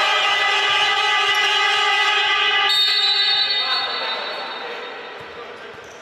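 Basketball game buzzer sounding one long steady tone, fading out over the last couple of seconds.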